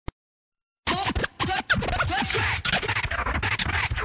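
Turntable scratching: quick back-and-forth pitch glides and cuts starting just under a second in, as the intro of a music track. A single click comes right at the start.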